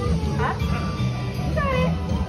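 A sea lion barking in short calls over steady background music.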